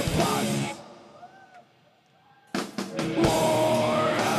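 Heavy metal band playing live, with distorted electric guitars and drum kit. The band cuts off less than a second in, leaving nearly two seconds of near silence. Then sharp drum hits bring the full band crashing back in.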